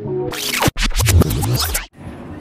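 Intro music with scratchy, glitchy sound effects: the music breaks up into harsh noisy bursts and cuts out abruptly twice, part of a VHS-tape-style intro effect.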